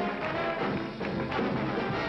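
Orchestral music with brass to the fore, several instruments holding notes together.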